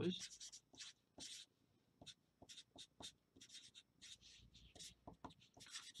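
Artline 90 felt-tip marker writing on paper: a string of short, faint strokes as a formula is written out.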